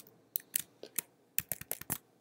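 Computer keyboard keystrokes: about nine quick, irregular clicks as keys are pressed to switch between applications.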